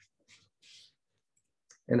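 A single short computer mouse click near the end, opening a right-click context menu, in a quiet pause with two faint soft hissy noises earlier; speech starts again just after the click.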